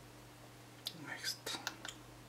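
A brief soft whispered utterance about a second in, followed by a few sharp clicks, over a steady low hum.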